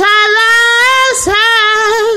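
A woman singing a song solo, holding two long notes and sliding up into the second about halfway through.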